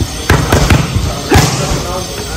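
Boxing gloves smacking into focus mitts: a quick three-punch combination, then one more punch about a second in.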